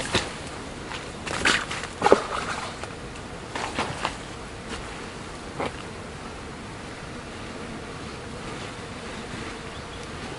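Mosquitoes whining in a steady faint drone. Several brief rustles and knocks come in the first half, the loudest about one and a half and two seconds in.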